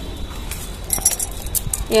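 Bangles on a wrist jingling and clinking as the hand moves, in a few light clusters about a second in and again a little later.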